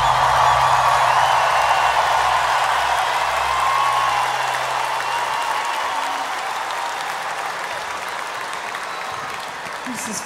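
Large arena crowd cheering and applauding, loudest at first and slowly dying down, with a few whistles early on. A low held note from the music fades out about five seconds in.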